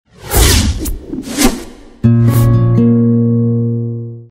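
TV channel logo sting: two or three whooshes in the first two seconds, then a held musical chord that comes in suddenly about halfway and slowly fades out.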